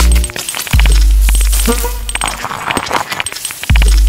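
Glitchy experimental electronic music track: two long, deep sub-bass booms, each opening with a quick downward pitch drop, about three seconds apart, over crackling clicks and high ticks.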